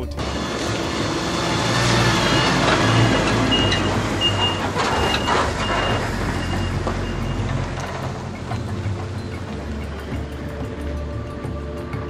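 Vehicle traffic on a rough unpaved road, a car driving past with a steady rumble that swells a couple of seconds in. A short high beep repeats several times from about three to seven seconds in, like a reversing alarm, over background music.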